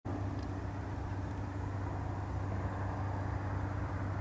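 A steady, low engine hum that runs without change.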